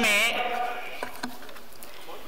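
A man speaking through a podium microphone draws out the last syllable of a phrase, which trails off within the first half second. A pause of steady room noise follows, with a couple of faint clicks.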